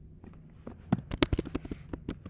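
Keystrokes on a computer keyboard: a quick, irregular run of sharp clicks of varied loudness, starting about two-thirds of a second in, as a short word is typed.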